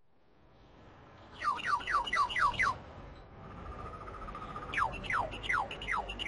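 Bird-like chirping over a faint hiss: a run of quick falling chirps, about five a second, starting about a second and a half in, then a short steady whistle and a second run of falling chirps near the end.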